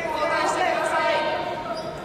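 Several voices calling out over one another in a large hall, typical of coaches and teammates shouting from the sides of a wrestling bout.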